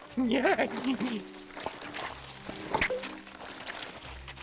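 Wet, slimy squelching sound effects for a slug's slime trail over sustained background music, with a brief wordless cartoon voice sound in the first second.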